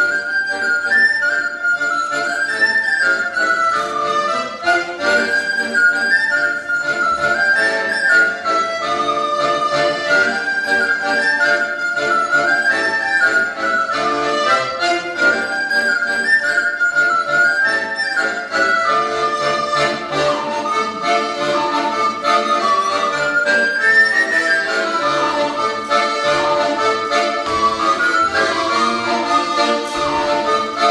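A recorder plays a lively folk melody in repeating rising-and-falling phrases over accordion chords. About two-thirds of the way through, the melody moves lower.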